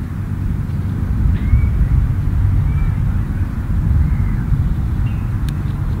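Steady low outdoor rumble with a few faint, short high chirps.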